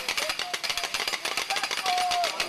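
A procession crowd on the move: a fast, dense rattle of beats with short calls from several voices over it.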